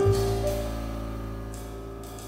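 Crossover jazz piano trio of grand piano, double bass and drums playing: a chord with a deep bass note is struck at the start and left to ring and fade, with a higher piano note joining about half a second in.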